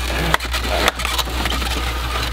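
Polystyrene foam egg carton being slid out of a refrigerator shelf, scraping and squeaking against the carton under it, with two sharp clicks about a third of a second and about one second in.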